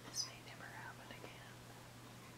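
A faint whispering voice, with a short hiss near the start and soft murmured sounds after it, over a steady low hum.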